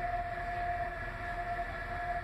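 Northern class 195 diesel multiple unit running, heard from inside the carriage: a steady whine over a low, continuous rumble.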